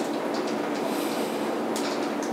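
Steady background noise with a low hum and a couple of faint clicks.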